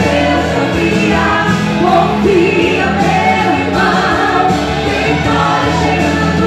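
Two women singing a Christian praise song together into microphones, with steady instrumental accompaniment underneath.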